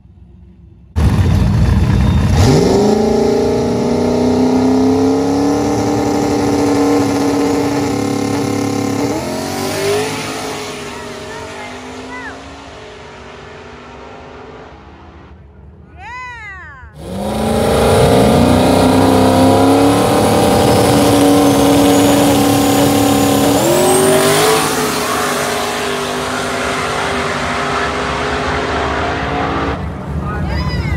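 Drag cars launching off the line side by side, one a turbocharged 4.6-litre two-valve New Edge Mustang GT. The loud engine note climbs, breaks at the gear shifts, then fades as the cars pull away down the track. The same loud launch starts suddenly again about 17 seconds in.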